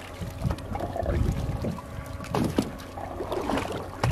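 Choppy seawater lapping and sloshing against the side of a boat, with an uneven low rumble that swells about a second in and a faint steady hum underneath.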